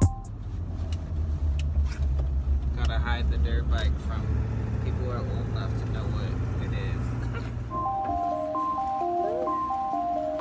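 Low, steady road and engine rumble inside a pickup truck's cab while driving, with a brief voice about three seconds in. A light, plinky melody comes in near the end.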